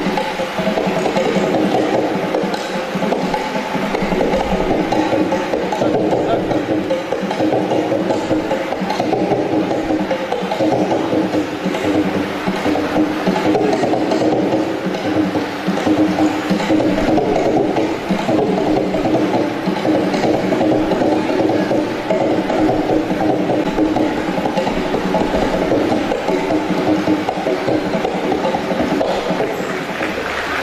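An ensemble of veenas and violins playing Carnatic music together, at an even loudness throughout.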